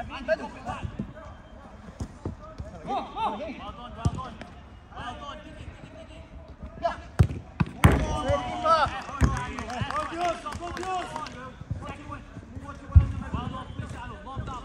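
Five-a-side footballers shouting and calling to each other, with sharp thuds of the ball being kicked. About halfway through there are two hard strikes in quick succession, followed by louder shouting. One loud thud near the end is the loudest sound.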